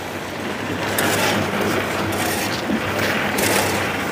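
A machine running steadily: a continuous mechanical noise with a low hum under it and a few faint clicks.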